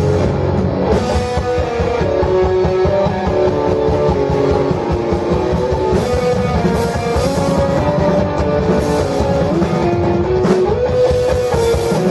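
A live rock band playing loudly: electric guitar riffs over a busy drum kit beat.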